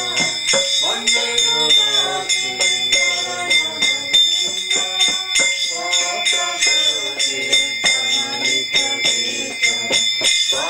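Devotional arati kirtan: a group of voices singing over a steady beat of ringing metal percussion, bells and small hand cymbals.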